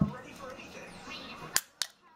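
A thump at the start, faint voices in the background, then two sharp clicks about a quarter second apart near the end.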